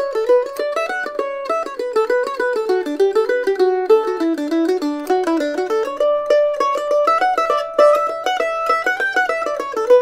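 Acoustic A-style mandolin picked with a flatpick, playing a continuous single-note melody of quick plucked notes. It is The Loar LM-110-BRB Honey Creek first, and partway through another budget A-model mandolin takes over the tune.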